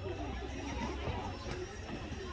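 Background chatter of several people's voices, with no clear words, over a steady low rumble.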